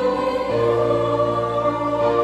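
Youth choir singing a hymn in parts, holding long chords in harmony that shift to a new chord about half a second in.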